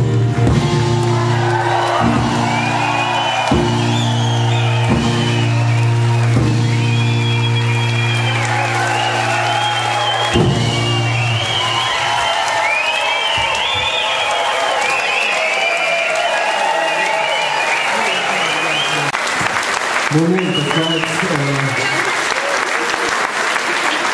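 A live band holds a final chord, punctuated by a few drum hits, which cuts off about eleven seconds in. The audience keeps applauding and cheering. Near the end a man's voice speaks over the applause.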